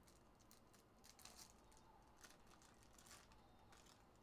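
Near silence, with faint, scattered crinkles of a foil card-pack wrapper being handled and opened.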